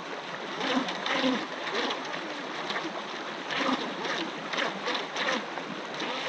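Shallow mountain stream rushing steadily over stones, with irregular louder splashes through the middle.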